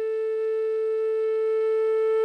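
Background music: a flute holding one long, steady note.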